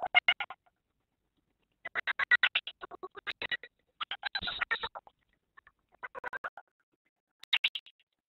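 Garbled, choppy audio from a remote participant's microphone on a web-conference link, arriving in five broken bursts of about a second or less, each with a rapid stutter and gaps of silence between. It is squeaky enough that listeners liken it to chipmunks or chattering monkeys: the audio connection is failing, and the moderator thinks the source may be the remote classroom itself.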